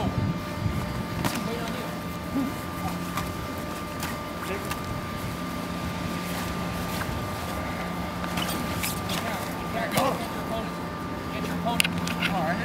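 Padded pugil sticks knocking against each other and against the fighters' helmets and vests, a few sharp hits spread through a bout, with short shouts near the end. A steady drone runs underneath.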